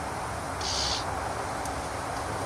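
Steady breeze noise with a low rumble, and one short, high-pitched buzzing chirp, likely from an insect, lasting under half a second about halfway in.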